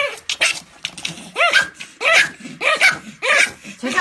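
Two Pomeranians barking and yapping at each other in a squabble over a bone: a run of short, high yaps, about two a second.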